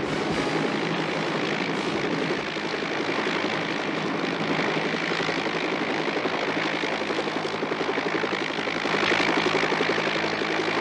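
Small aircraft engine running steadily, heard from inside the cockpit as a continuous drone with a fast, even pulsing.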